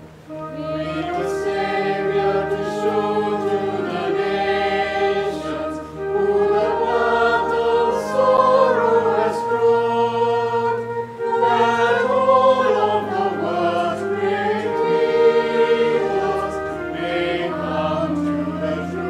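A congregation and choir singing a hymn in slow held notes over a sustained low accompaniment that moves from chord to chord.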